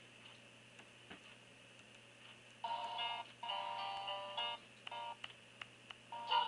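Faint electronic tone with several steady overtones, chopped into two blocks lasting about two seconds in the middle, then a few short blips, after a couple of seconds of near silence with faint ticks.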